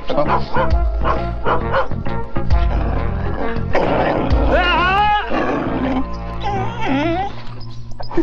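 Background music with a dog barking over it. About halfway through, the dog gives a couple of long, wavering whines.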